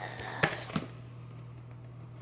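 Knife slicing and tapping through packing tape on a cardboard shipping box, giving two sharp clicks in the first second and then faint scraping, over a steady low hum.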